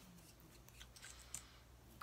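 Near silence with a few faint small clicks and light rubbing: a liquid lipstick tube and its applicator being handled.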